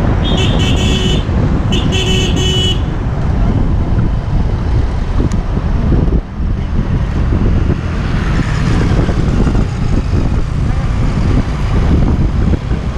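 A vehicle horn honks twice in the first three seconds, each honk lasting about a second. Under it, the steady rush of wind and road noise from riding a two-wheeler at speed continues throughout.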